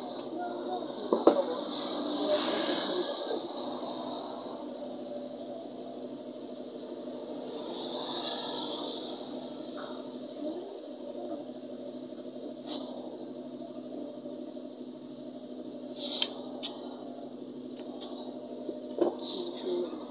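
Stiff crinoline mesh being cut with scissors and handled: a sharp snip about a second in, rustling of the mesh, then a few light clicks, all over a steady low hum.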